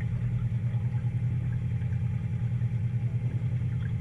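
An engine idling with a steady, fast, even low throb.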